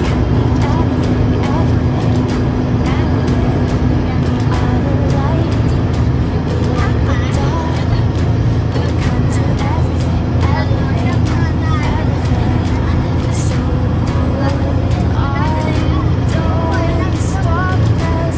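Steady low road and engine rumble inside a car cabin cruising at motorway speed, with voices and music heard over it.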